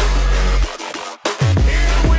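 Electronic dance music with a heavy bass line and a driving beat. The bass and beat cut out briefly in the middle, then come back with a falling bass slide.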